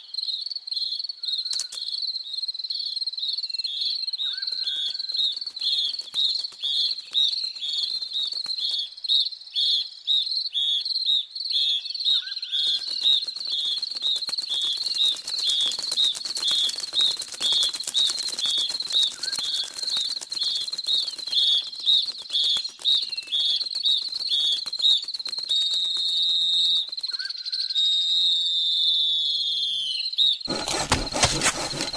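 Insect chirping, cricket-like, repeating in a steady, even rhythm. Near the end it gives way to a high falling whistle-like glide.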